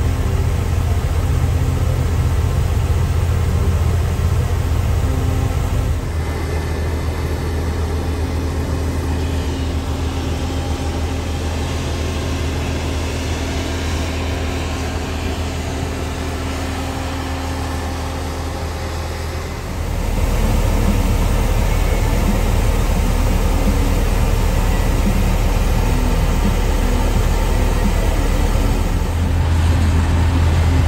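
Heavy diesel farm machinery running with a steady low drone: a tractor powering a grain cart's unloading auger into a grain trailer, and a combine harvesting wheat. The sound changes abruptly about 6 seconds in and again about 20 seconds in.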